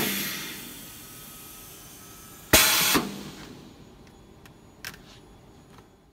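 Bag-on-valve aerosol filling machine venting compressed air: a sharp hiss at the start that fades away, and another short hiss about two and a half seconds in, then a couple of faint clicks near the end.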